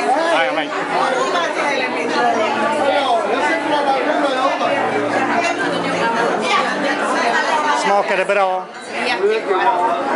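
Many people talking at once in a large room: steady overlapping conversation, with a brief lull about eight and a half seconds in.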